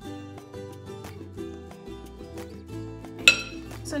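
Background music with a steady beat. Near the end comes one sharp, ringing clink: a spatula knocking against a glass mixing bowl.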